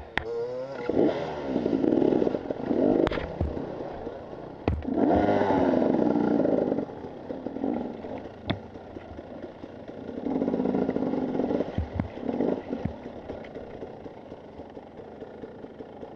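Husqvarna TE 300 two-stroke enduro motorcycle engine revved in about five short bursts, dropping back to a low run between them, as the bike is worked up a rocky climb. Sharp knocks and clatter from the bike striking rocks come in between the bursts.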